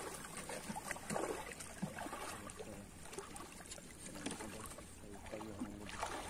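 Faint water moving and lapping in shallow reef water, with a few small clicks.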